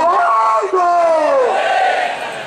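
A man shouting a drawn-out slogan into a microphone over a PA, in two long held calls that fall in pitch.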